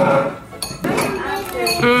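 Cutlery clinking against dinner plates a few times, with voices talking over it.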